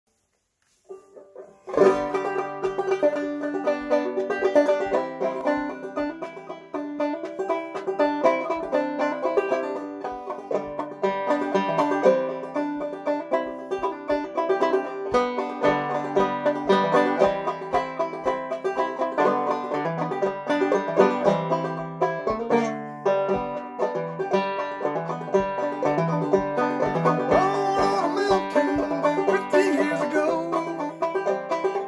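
Solo banjo playing a picked instrumental introduction in a steady rhythm, starting about two seconds in.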